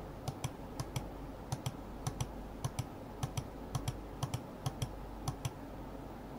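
Rapid, irregular clicking of computer controls while paging through photos, about three to four clicks a second and often in quick pairs.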